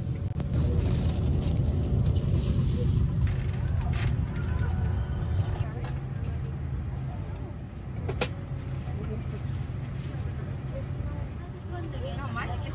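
Steady low rumble heard from inside a vehicle, with faint voices in the background and a single sharp click about eight seconds in.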